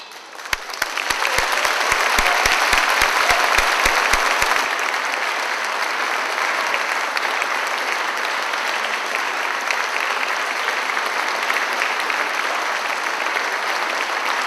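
Large audience applauding, swelling over the first couple of seconds and then holding steady. A quick run of low thumps, about four a second, sounds through the applause for its first four seconds.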